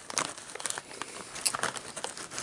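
Plastic Doritos chip bag crinkling as a hand rummages inside it: a dense, irregular run of crackles.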